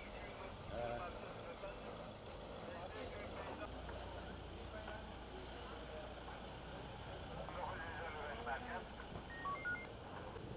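Outdoor street ambience: faint, indistinct voices of people talking in the background over a low steady traffic rumble, with a few short high chirps here and there.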